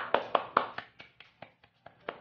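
One person clapping her hands, about five claps a second, growing softer as it goes.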